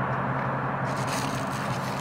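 Steady low hum of a parked car idling, heard from inside the cabin with the driver's window down, with a faint rustle from about a second in.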